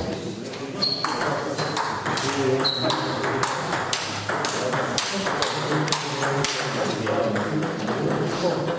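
Table tennis rally: the ball clicking sharply off the bats and the table in a quick, steady series of hits, with voices talking in the background.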